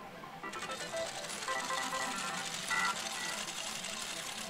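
Pachislot hall din: a steady wash of machine noise with electronic jingles and short beeping tones from the slot machines, louder from about half a second in.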